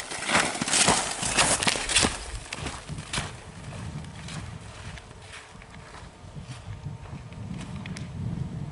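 Skis scraping and swishing on snow through turns, a quick run of loud strokes in the first three seconds, then fainter ones, over a low rumble.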